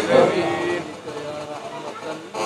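A man's chanted recitation through a microphone and loudspeakers: a held phrase in the first second that fades away, followed by a quieter pause.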